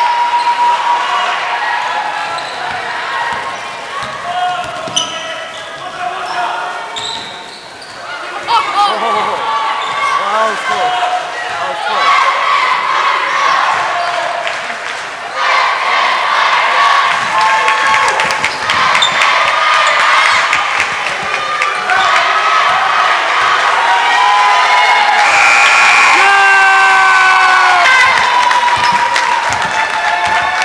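Basketball bouncing on a hardwood gym floor during play, with players' and spectators' voices calling out across the gym.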